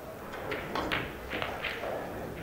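Pool shot: several short clicks and knocks of the cue and balls as a shot is played and an object ball is pocketed.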